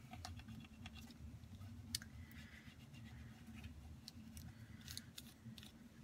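Faint scratching of a flat burnishing tool rubbed over paper and cheesecloth to press an embellishment down, with a few light taps and a sharper click about two seconds in.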